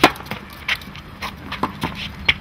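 Tennis ball struck by a racket, one sharp pop right at the start, followed by several lighter knocks and taps on the court over the next two seconds.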